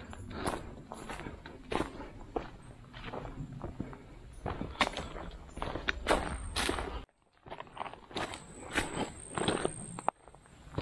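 A hiker's footsteps on a dirt forest trail and across the loose stones of a dried-up stream bed, about two steps a second. The sound cuts out briefly about seven seconds in.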